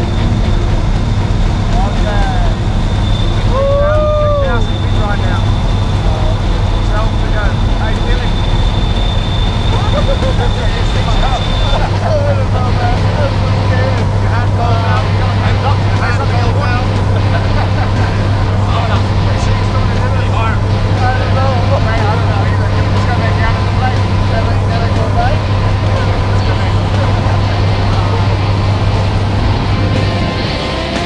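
A skydiving plane's engine and propeller droning steadily inside the cabin, a low even hum, with voices raised over it. A steady high whine sits on top for the first dozen seconds or so.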